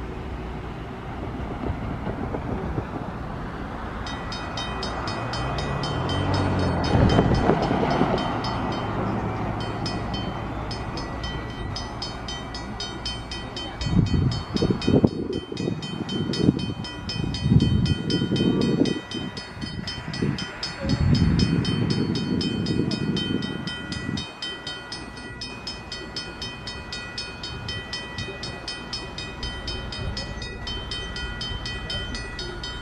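Level-crossing warning bells ringing rapidly, starting about four seconds in, as an electric commuter train approaches the crossing. There are loud low rumbling bursts in the middle.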